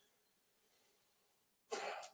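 Near silence, then near the end a short, breathy burst from a man's mouth and throat, like a light cough or sharp breath.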